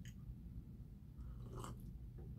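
Faint eating sounds of chewing, with a short sip from a paper cup about one and a half seconds in.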